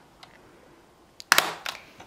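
A single sharp plastic snap a little past halfway, followed by a couple of fainter clicks: a Snap Circuits piece, the 100-ohm resistor, being pressed onto its metal snap connectors.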